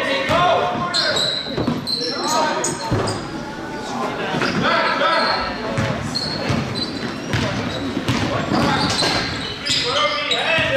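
A basketball being dribbled on a hardwood gym floor, with sneakers squeaking and players' voices calling out, all echoing in a large gymnasium.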